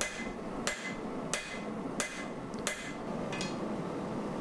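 Hand hammer striking a hot layered Damascus billet of 1084 and 15N20 steel on an anvil, six steady blows about two-thirds of a second apart, each with a short metallic ring: drawing out the forge-welded billet.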